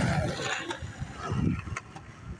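Wind buffeting the microphone: an irregular, gusty low rumble that is strongest early on and eases off, with a few light clicks.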